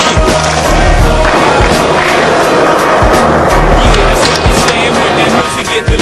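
Skateboard wheels rolling and scraping on concrete: a rough, steady noise from about a second in that stops shortly before the end. A hip-hop beat plays underneath.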